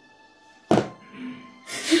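One loud thud of a fist striking a door, a little under a second in, over faint background music.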